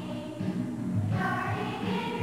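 A group of teenage voices singing together in unison as a choir, with a new line of notes beginning about a second in, over a steady low beat.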